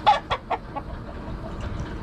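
Silver-laced rooster clucking: a few short clucks, loudest in the first half-second, then fainter ones.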